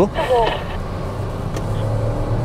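MG Astor's engine and road noise heard from inside the cabin at speed, a steady low drone.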